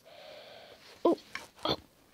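A man groaning as if in pain: a breathy, wheezy groan, then two short cries of "oh".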